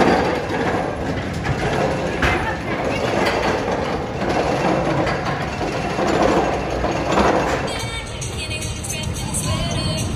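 Arrow steel looping roller coaster train running on its tubular track: a continuous rumble that swells several times, mixed with riders' voices. Near the end it drops to a quieter background with faint chirps.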